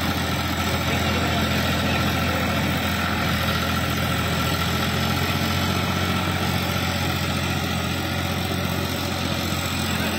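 Farmtrac 6042 tractor's three-cylinder diesel engine running steadily under load while it drives a rear rotary tiller through wet, muddy ground.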